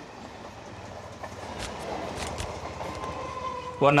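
Low, steady background rumble of outdoor traffic-like ambience with a faint continuous hum and a few light clicks, under a pause in the dialogue.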